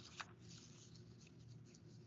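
Near silence over a faint low hum, with a light click just after the start and faint scattered rustling: someone handling documents while looking for an exhibit.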